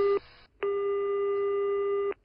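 Telephone ringback tone heard down the line as a call rings out: a short beep, then one steady tone about a second and a half long.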